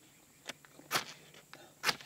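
Steel striker scraped down a flint fire-starter rod (ferro rod) pressed into dryer lint, three short sharp rasping strikes, the last near the end the loudest, throwing sparks to light the lint.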